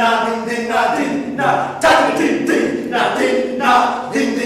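Several voices singing unaccompanied, in short phrases that repeat one after another.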